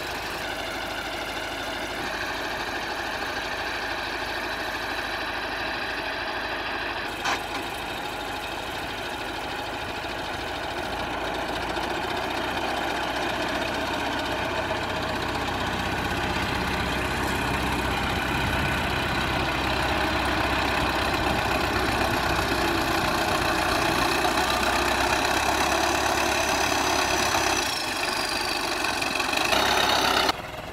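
Engine of a small rubber-tracked rice carrier, heavily loaded with sacks, running steadily as it crawls through mud. It grows louder from about eleven seconds in, and there is a single sharp click about seven seconds in.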